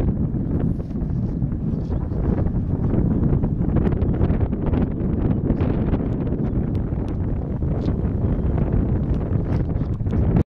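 Wind buffeting the microphone: a steady low rumble with frequent short gusts.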